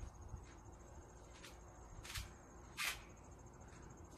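Faint, steady, high-pitched trill of crickets, with a few short rustling swishes, the loudest about three seconds in, and soft low thumps.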